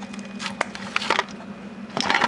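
Plastic ABS sensor wiring connector being worked loose and unplugged by hand: a few short clicks and rattles, over a steady low hum.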